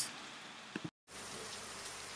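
Faint steady background hiss and room tone with a low hum, broken by a short dead-silent gap about a second in where the recording cuts.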